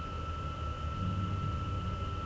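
Steady room background noise: a low hum and hiss with a constant faint high-pitched whine.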